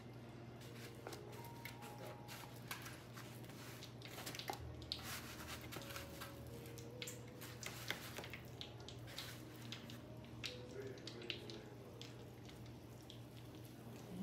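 Cube steak frying in a skillet of hot oil: a faint, irregular crackle and spatter throughout, over a steady low hum, with soft squishy sounds of meat being pressed into breadcrumbs.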